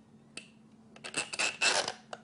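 Fiber splice tray being pressed down onto the closure's organizer and held under a strap: a sharp click, then about a second of rubbing and scraping with small clicks as the tray and strap are worked into place.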